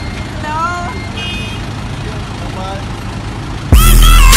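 A school bus engine idling with short voices calling over it. Near the end, loud electronic music with a heavy beat cuts in suddenly and is the loudest sound.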